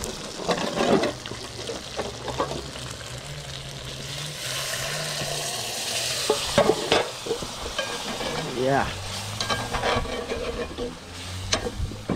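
A meat stew sizzling in an aluminium pot over a wood fire, with a metal spoon clinking and scraping against the pot as it is stirred and liquid is ladled in. The sizzle swells to a louder hiss about four seconds in, then dies back to clicks and scrapes.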